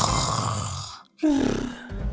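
A person snoring: a rasping snore lasting about a second, a brief silence, then a pitched breath out.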